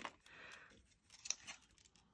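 Faint handling of seashells on a fabric-covered board: light rustling, then a couple of short clicks a little past the middle as small shells are set down and shifted.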